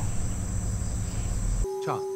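Outdoor insects trilling steadily in a high, thin continuous tone over a low rumble of outdoor noise. The sound cuts off abruptly near the end, where a steady low tone and a brief voice take over.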